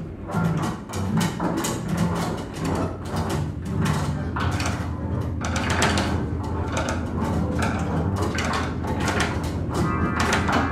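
Large free-improvisation ensemble of strings, including double bass and cellos, playing live: a dense, busy texture of many short plucked and struck attacks over a steady low drone.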